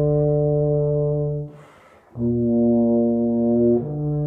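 Euphonium playing slow, sustained notes: a long held note, a quick breath about one and a half seconds in, then another long note that steps to a new pitch just before the end.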